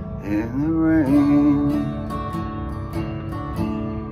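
Acoustic guitar played in a slow ballad. A man holds a sung note that bends up at the start, then a few soft strums near the song's close let the chord ring.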